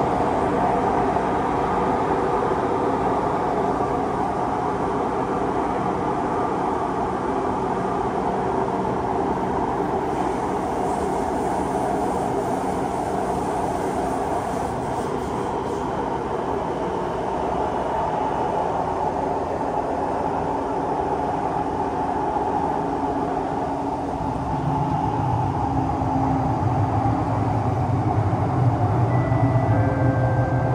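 Siemens C651 metro train running at speed through a tunnel: a steady rumble of wheels and running gear, with several steady hum tones over it. About 24 seconds in, a deeper hum joins and the sound grows a little louder, and short high tones sound near the end.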